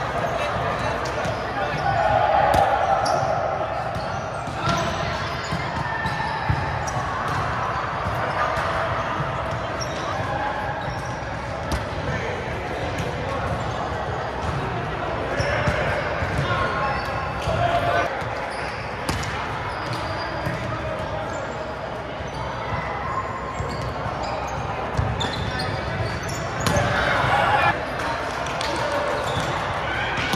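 Volleyballs being hit and bouncing on a hardwood gym floor, many sharp slaps scattered through the players' calls and chatter, all echoing in a large gym hall.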